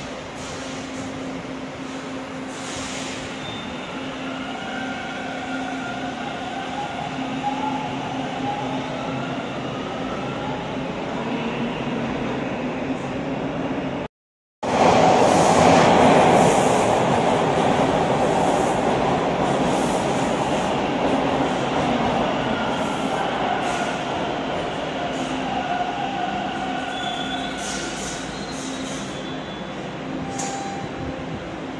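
Bombardier T1 subway train running along an underground station platform, wheel and traction-motor noise with steady whining tones, growing slightly louder. After a sudden cut, a second T1 train pulls in, loudest just after the cut and fading steadily as it slows toward a stop.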